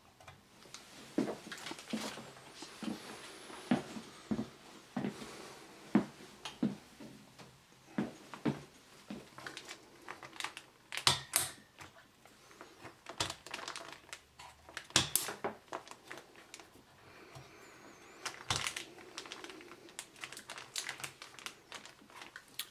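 Irregular plastic clicks and taps from an Intel stock CPU cooler being pressed down onto the motherboard, its four push-pins snapping into place, the loudest clicks about halfway through.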